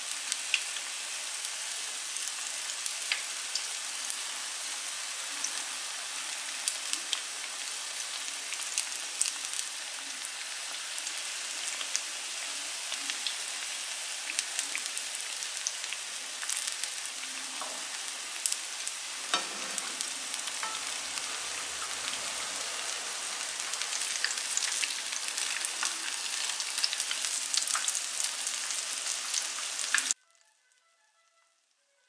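Banana fritters frying in hot oil in a nonstick pan: a steady sizzle with scattered crackles and pops, a little louder near the end.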